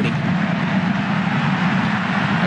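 Steady stadium ambience under a televised football match: a continuous low rumbling din with no distinct events standing out.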